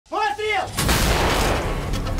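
A man shouts "Fire!", then an artillery gun fires about three-quarters of a second in. It is one sudden blast, followed by a long rumble and reverberation.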